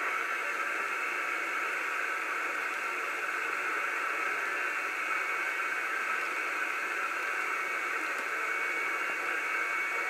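Steady, even static hiss from a Cobra 2000 GTL SSB CB radio's receiver on lower sideband, with no readable voice in it: band conditions are poor.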